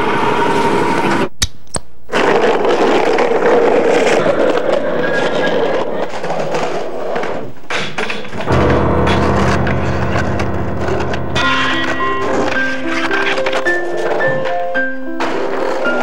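Skateboard wheels rolling on concrete with board knocks, then a low steady drone comes in just past halfway and a simple piano melody of short stepped notes starts near three quarters in.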